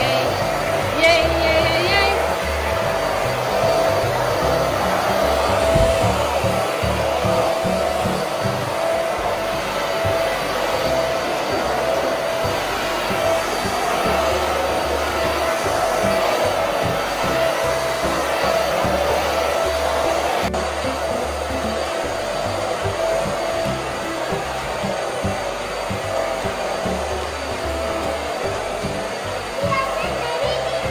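Cordless stick vacuum cleaner running steadily on a rug: a continuous rush of airflow with a steady motor whine.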